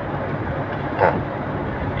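Steady hum of a car's interior, with the engine or air-conditioning running, and one brief louder sound about a second in.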